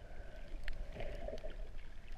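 Underwater ambience heard through a submerged camera: a low, steady rumble of moving seawater with a muffled gurgle about a second in and a few sharp, scattered clicks.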